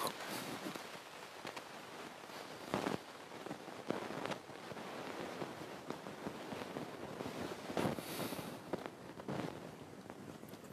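Subbuteo table-football figures being flicked by hand on the cloth pitch: a few short, soft clicks spread across the stretch, over the low background hum of the hall.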